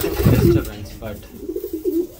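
Racing homer pigeon cooing low and warbling at the nest, once near the start and again about a second and a half in, with a loud rough bump or rustle in the first half second.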